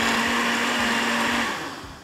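Countertop blender running steadily with a motor hum, blending ice, blackberries, yogurt and milk into a smoothie. It is switched off about one and a half seconds in, and its motor winds down.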